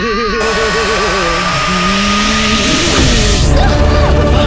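Dramatic film background score: a wavering melody, overlaid from about half a second in by a loud rushing whoosh that fades out near the end as a deep bass comes in.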